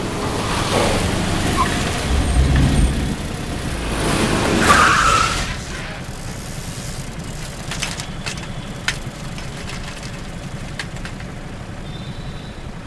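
An SUV driving up and braking hard, its tyres skidding briefly about five seconds in, over street rumble; after that it is quieter, with a few faint clicks.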